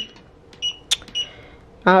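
Touch control panel of an LED vanity mirror beeping as its buttons are pressed: two short high beeps about half a second apart, with a sharp click between them. Each beep confirms a touch on the light-setting or Bluetooth buttons.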